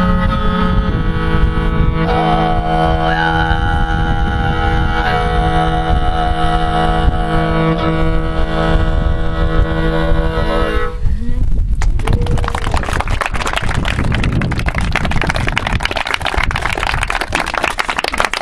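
Mongolian throat singing (khöömii) with morin khuur: a steady low drone with a thin, wavering overtone melody whistling above it. The piece ends about eleven seconds in, and an audience applauds for the rest.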